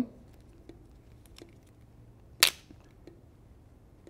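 A single sharp snap about two and a half seconds in, as the ring-pull seal is pulled off the bottom of a 400 g grease cartridge, among a few faint handling clicks.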